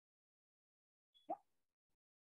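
Near silence, broken once by a short pop about a second and a quarter in.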